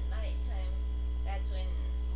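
Steady low electrical mains hum on the recording, with faint, indistinct speech twice above it.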